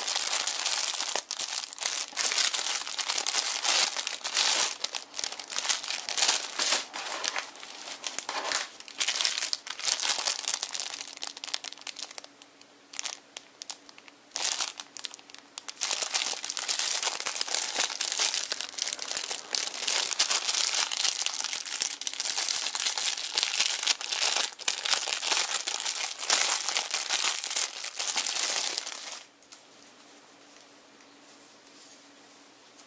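Thin clear plastic packaging bags crinkling as hands handle them, in dense irregular crackles with a quieter stretch about halfway through. The crinkling stops shortly before the end.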